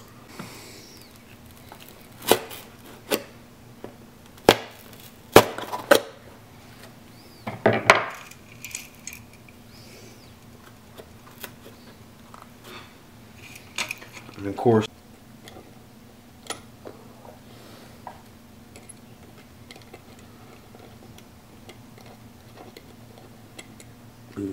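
Hand tools and small parts being handled on a wooden workbench: scattered sharp clicks and clacks, most of them in the first eight seconds and a few more around the middle, over a faint steady hum.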